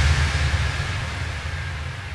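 Electronic dance music breakdown with the beat dropped out: a held low bass tone under a wash of white-noise hiss, both fading away steadily.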